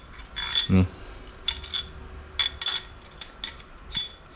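Irregular light metallic clicks and clinks as a CNC aluminium triple clamp, its steel steering stem and the steering-head bearing on it are handled and knock together, some clicks with a brief ring.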